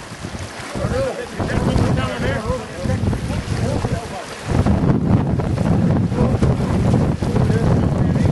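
Wind buffeting the microphone over open sea: a loud, uneven low rumble that sets in suddenly about halfway through and stays to the end, after a few seconds of voices calling.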